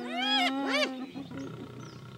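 Spotted hyenas squealing while mobbing a lion: several overlapping high calls, each rising and falling, packed into about the first second over a low steady tone, then the calls die down.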